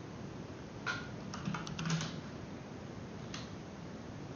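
Computer keyboard keys being typed: a click about a second in, a quick run of several clicks just after, and a single click near the end, over a steady hiss.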